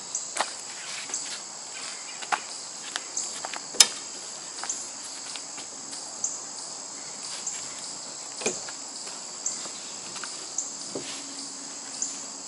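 A steady high insect drone with a short high chirp about once a second. Over it come scattered knocks and scrapes as a foam-lined Sportspal canoe is slid off a car roof rack onto a man's head, the sharpest knock a little under four seconds in.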